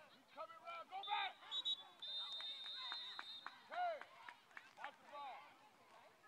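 Referee's whistle blowing at the end of a football play: two short blasts, then one held for about a second and a half, over shouting voices of players and spectators.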